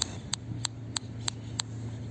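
A car's turn-signal indicator ticking steadily, about three clicks a second, over the low hum of the engine.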